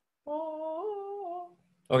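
A person humming a short "mm-hmm"-like sound of just over a second, stepping up in pitch midway and easing down at the end.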